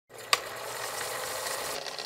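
News station logo intro sound effect: a sharp hit about a third of a second in, then a steady hissing noise.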